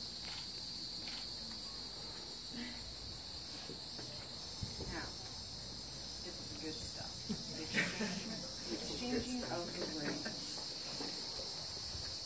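Steady, high-pitched chorus of insects, with faint low murmuring voices in the second half.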